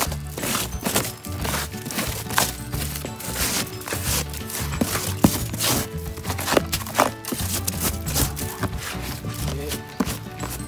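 Hand scraping and breaking crusted snow and ice off a car's front bumper and grille: a dense, irregular run of crunching scrapes.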